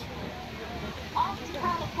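A person speaking from about halfway in, over a steady low background rumble of outdoor noise.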